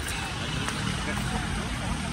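Steady street traffic noise from cars at a city intersection, with a low engine hum coming in about a second in.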